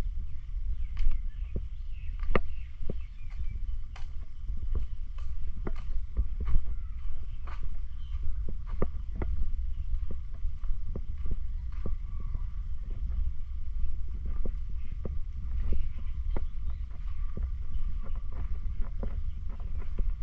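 Footsteps of someone walking at a steady pace on hard ground, about two steps a second, over a low rumble of wind on the microphone.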